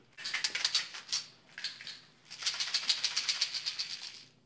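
Pills rattling in a pill bottle being shaken: a short bout of fast rattling in the first second, then a longer one from about halfway through to the end.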